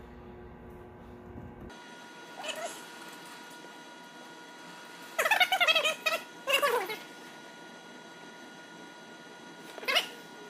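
Sped-up speech: a man's voice fast-forwarded into high, squeaky chatter that comes in three short bursts, the longest about a second, over a faint steady hum.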